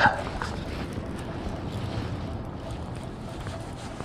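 Wind rushing over the microphone as a steady noise, with a brief brush of jacket fabric across it at the start.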